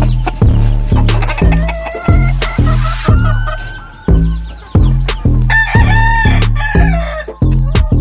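A gamefowl rooster crowing twice, about two seconds in and again near six seconds, over hip hop music with a heavy bass beat.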